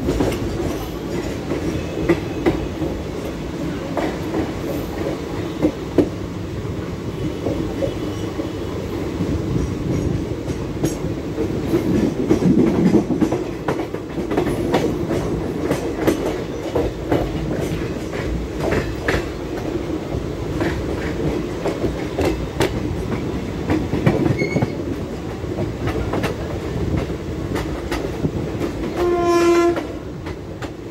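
Express train coaches running at speed, wheels clicking irregularly over rail joints and points, heard from an open coach door. A train horn sounds once, briefly, near the end.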